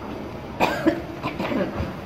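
A person coughing in short, uneven bursts, starting about half a second in.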